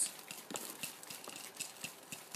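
Light, irregular clicks and crackles of orchid bark chips being picked and worked loose inside a terracotta pot.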